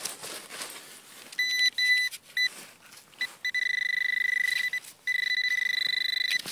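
A handheld metal-detecting pinpointer beeping as it is probed in the soil over a buried target. First come a few short beeps, then long, steady tones from about the middle on, as the tip closes in on the object, which turns out to be a coin.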